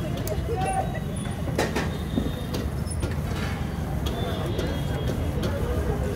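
Steady low rumble of street traffic with background voices, and a sharp click about a second and a half in.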